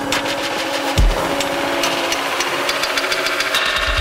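Loud electronic dance music from a live DJ set on a club sound system: a dense, buzzing synth layer with a deep bass hit about a second in and heavy bass coming back at the very end.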